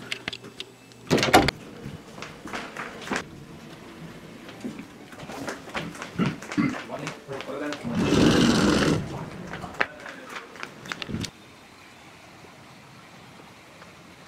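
Clicks and rustles of movement, then, about eight seconds in, a shoji paper sliding door sliding along its track with a scraping swish of about a second. Near the end the sound drops to a steady faint hiss of outdoor ambience.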